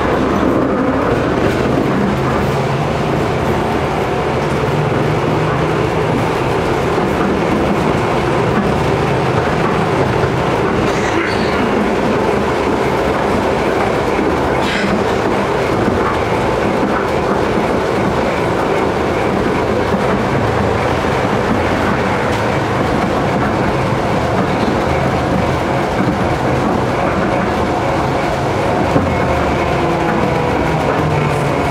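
Tram running along its tracks, heard from inside at the front: a steady low hum with continuous wheel-on-rail noise, and a couple of faint clicks partway through.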